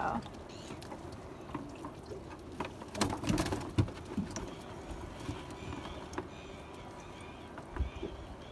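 A wet set net being hauled in by hand over the side of a small boat, with scattered knocks and rustles of net, seaweed and catch against the hull, busiest about three seconds in. Faint repeated high chirps run through the second half.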